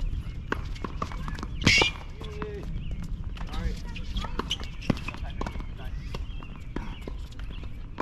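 Footsteps and scattered sharp knocks on an outdoor hard tennis court between points, with faint voices in the background. One louder sharp sound comes just under two seconds in.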